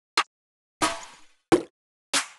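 Three different trap snare drum one-shot samples previewed one after another, each a short sharp hit with silence between; the middle one, about a second in, has a longer decaying tail.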